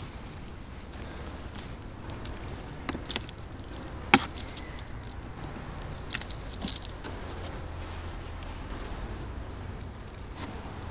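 A few sharp clicks and cracks, the loudest about four seconds in, as a metal hive tool pries the wooden top cover loose from the hive body. Under them runs a steady high insect chirring.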